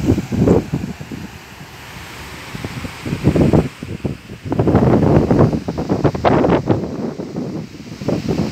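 Wind buffeting the microphone in gusts: a loud, low rumble that comes and goes, easing off about a second in and building again past the middle.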